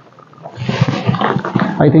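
Rustling and scraping of a long taped cardboard parcel being turned over in the hands, a crackly noise lasting about a second and a half before speech resumes at the end.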